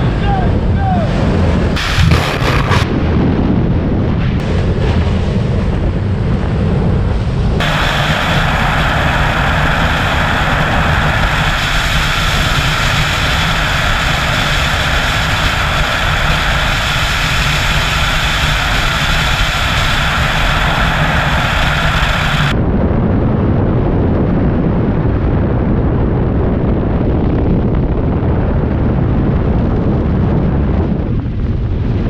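Loud, steady rush of freefall wind buffeting a skydiver's helmet-mounted camera microphone. From about eight seconds in until about twenty-two seconds in the rush turns brighter and hissier, then changes back abruptly.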